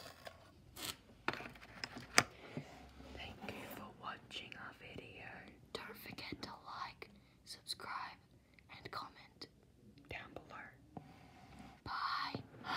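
Soft, unintelligible whispering, with a few sharp clicks in the first couple of seconds.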